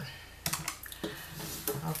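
Keys of a Dexin desktop electronic calculator clicking as they are pressed, a few separate presses, with light knocks of the calculator being handled on the countertop.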